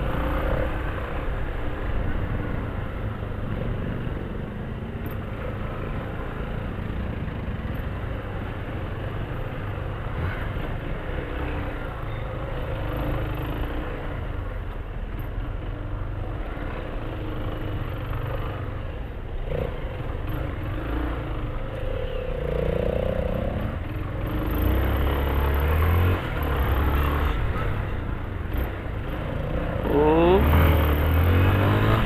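A Yamaha Fazer 250's single-cylinder engine running at low speed while the motorcycle filters between cars in slow traffic, along with the sound of the surrounding traffic. The low rumble grows louder in the last few seconds.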